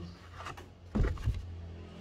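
Printed paper certificate sheets rustling as they are handled and held up, with a dull thump about a second in.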